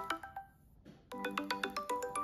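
Smartphone ringtone for an incoming voice call on a Samsung Galaxy Note 10 Lite: a quick melody of marimba-like notes. It breaks off about half a second in and starts again about a second in.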